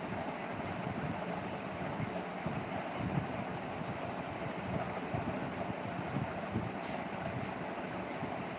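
Steady background noise with a faint constant hum and no distinct events: room tone.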